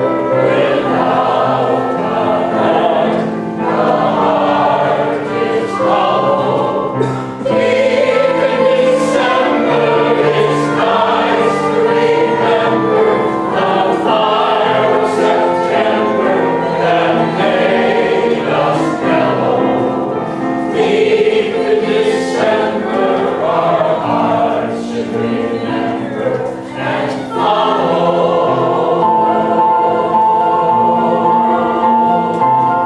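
Mixed choir of men's and women's voices singing a Broadway show tune in harmony. Near the end, a steady high note is held.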